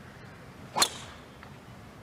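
Driver striking a golf ball off the tee: one sharp crack a little under a second in, with a brief ring after it.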